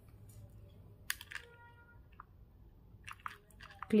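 Soft clicks of a desk calculator's keys being pressed to enter a price: a couple about a second in and a quicker run of several near the end.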